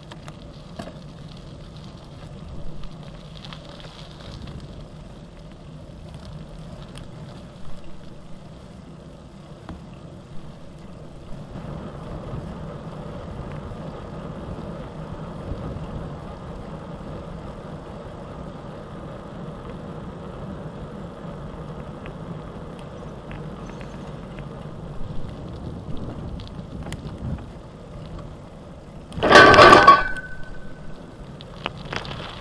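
Gravel bike rolling along a paved road, picked up by a handlebar-mounted camera: steady tyre and road noise that gets louder about a third of the way in, with a few light knocks. A short, loud clatter comes just before the end.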